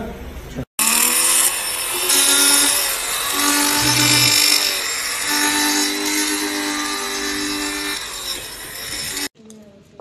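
Handheld electric cloth cutter running through fabric: a motor whine whose pitch shifts slightly as it cuts, over a loud hiss. It stops abruptly near the end and gives way to light metallic clicking.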